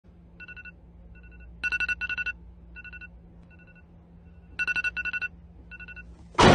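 Electronic alarm tone beeping in short bursts of rapid pulses, some bursts faint and two groups, about a second and a half in and near the end, much louder.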